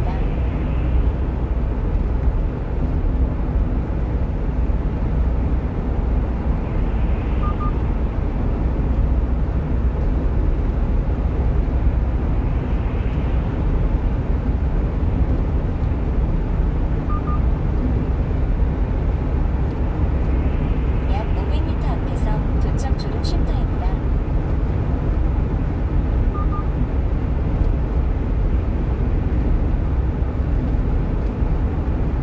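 Steady low rumble of road and engine noise inside a 1-ton refrigerated truck's cab at highway speed. A short double beep sounds about every ten seconds, and a brief cluster of high ticks comes about twenty-two seconds in.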